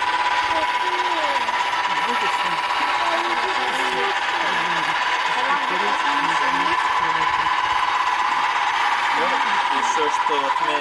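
Electric drive of an observatory telescope mount running steadily as it slews the telescope round: a continuous mechanical hum with a steady high tone. Children's voices chatter faintly underneath.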